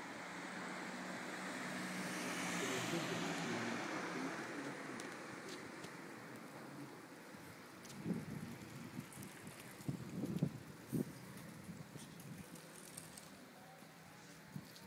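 A car passing on the street, its engine and tyre noise swelling over the first few seconds and then fading away. From about eight seconds in, a few scattered soft knocks.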